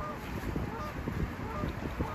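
Geese honking, a few short calls, over wind rumbling on the microphone.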